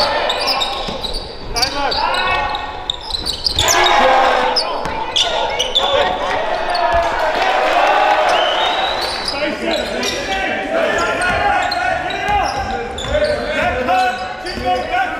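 Live indoor basketball game sound: a ball bouncing on a hardwood court among players' shouts and calls, echoing in a large gym hall.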